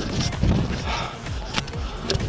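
A trail runner's footsteps on rock while clambering up a steep rocky climb: irregular knocks and scuffs of shoes on stone.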